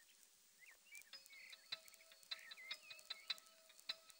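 Faint film background music with a ticking, clock-like beat that comes in about a second in, over a few light bird chirps.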